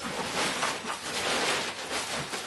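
Crinkly rustling and scraping of a large Cuben fibre dry bag being pulled up out of a backpack, coming in uneven swells.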